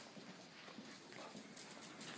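Faint, light, irregular tapping of a dog's paws and claws on a concrete floor as it trots.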